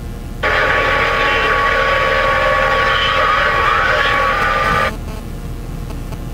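Two-way radio transmission: a burst of narrow, tinny radio sound with a steady whistle-like tone running through it, switching on suddenly about half a second in and cutting off abruptly about four and a half seconds later. A steady low rumble lies underneath.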